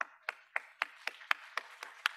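Audience applause in welcome. One clapper's sharp claps stand out at about four a second over quieter clapping.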